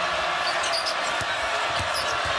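Steady noise of a packed basketball arena crowd, with a basketball being dribbled on the hardwood court in repeated low thumps and a few brief high sneaker squeaks.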